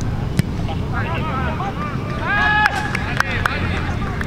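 Footballers shouting short calls to one another on the pitch, with one longer held shout about halfway through and a few sharp knocks, over a steady low rumble.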